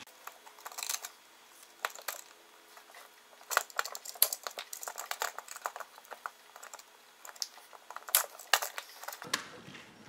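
Irregular small clicks and taps of hands working heavy-gauge electrical wire, a metal receptacle box and a hand cutter while trimming the wires to length, in two busier clusters around the middle and near the end.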